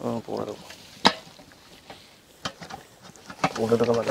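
Hands working wet masala paste into a whole raw chicken in a steel bowl: soft wet squelching and rubbing, with one sharp click about a second in and a few lighter ticks later.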